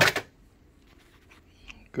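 A brief, loud noise burst at the very start, then quiet room tone with a few faint ticks near the end.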